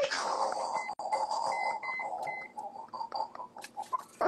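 A sudden burst of harsh, noisy, garbled sound over a livestream call's audio, with a few short high beeps, turning choppy near the end.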